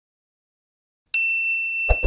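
Notification-bell ding sound effect from a like-and-subscribe button animation: one bright ding about a second in that rings steadily on one high note, followed near the end by two quick clicks.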